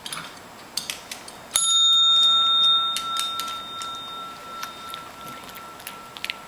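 Chrome desk bell struck once by a Brussels griffon's paw about one and a half seconds in: a single bright ding whose ring dies away slowly over several seconds. A few light clicks come before it.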